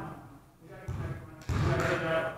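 A basketball bouncing on a hardwood gym floor, two sharp bounces about a second in and halfway through, each ringing on in the hall, with players' voices.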